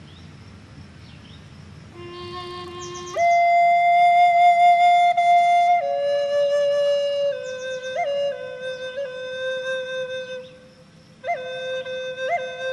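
Six-hole cedar Native American flute playing a slow Navajo chant melody. It enters about two seconds in on a low note, leaps up to a long held note, then steps down through lower held notes ornamented with quick upward flicks, with a breath pause near the end before the melody resumes.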